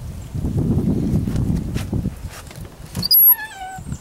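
Metal hinge of a Little Free Library's glass-fronted wooden door squeaking as the door is swung open: one squeal falling in pitch, about three seconds in. It comes after a couple of seconds of low rumbling noise.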